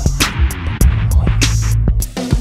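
Instrumental hip-hop beat without vocals: a held deep bass under regular drum hits.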